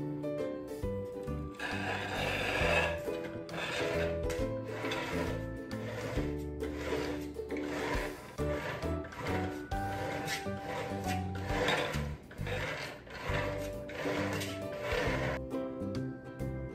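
Background music with a steady bass line, and over it, from about two seconds in, a spatula scraping and spreading frosting on a cake. The rasping strokes come about once a second and stop near the end.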